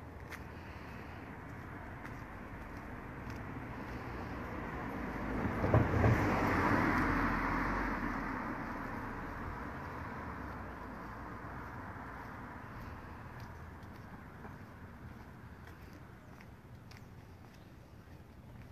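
A car driving past on the street. Its tyre and engine noise swells over several seconds, is loudest about six seconds in, then fades away slowly.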